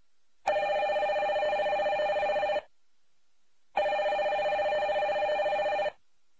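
Desk telephone ringing twice, each ring an even two-tone trill about two seconds long, with a pause of about a second between them.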